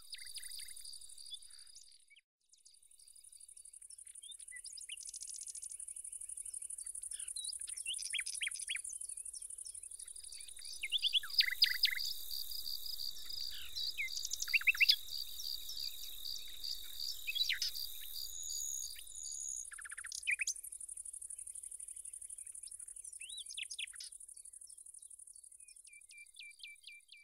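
Insects trilling steadily with birds chirping over them in short, sweeping calls, busiest in the middle. The insect sound drops out briefly about two seconds in.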